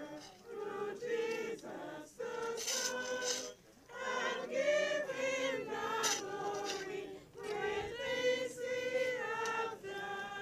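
A choir and mourners singing a hymn together, several voices in sustained sung phrases.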